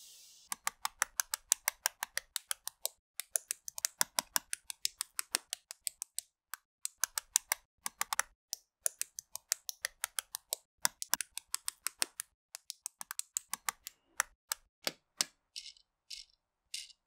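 LEGO bricks and Technic pieces being pressed and snapped together by hand: a rapid run of sharp plastic clicks, several a second, broken by brief pauses.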